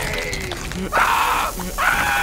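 An animated hot dog character's voice groaning with a falling pitch, then screaming in pain twice. The second scream is long and held, starting near the end.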